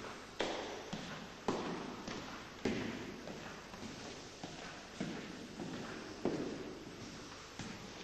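Footsteps on a hard tiled floor: a sharp heel strike roughly once a second, each followed by a short echo.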